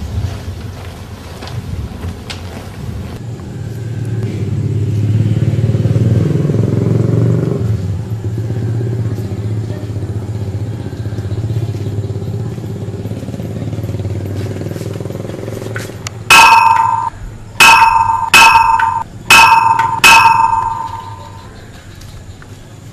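Motorcycle engine running, growing louder for a few seconds as it comes close and then holding steady. Near the end, five short, loud ringing tones sound in quick succession, each dying away fast.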